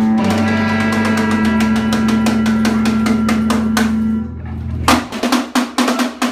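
Live rock band playing: electric guitars and bass hold a chord while the drummer plays a fast roll on cymbal and drum. A little past four seconds the held chord stops and a few separate hits follow.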